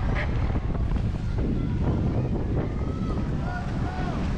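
Wind buffeting the microphone: a steady low rumble, with faint voices in the distance.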